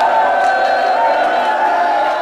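A person's voice holding a long, loud cry on one steady pitch.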